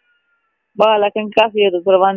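A voice speaking over a telephone line, with the narrow, thin sound of a phone call. It comes in after a silence of most of a second.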